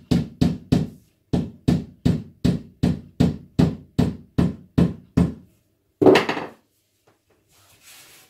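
A mallet tapping a thin wooden strip on a wooden panel: about fifteen quick, even knocks, roughly three a second, then one louder, longer knock about six seconds in.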